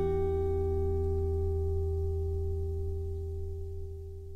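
A strummed acoustic guitar chord left ringing, slowly fading away.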